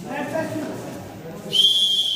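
Referee's whistle blown in one long, steady, high blast that starts sharply about one and a half seconds in, over voices in the hall.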